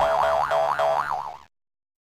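Cartoon boing sound effect on the Kaboom! Entertainment logo bumper: a wobbling tone that warbles up and down about four times a second over a steady note. It cuts off suddenly about one and a half seconds in.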